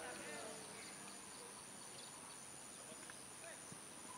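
Faint, distant voices of players calling out on an open football pitch, most of them in the first half second, over a steady high hiss.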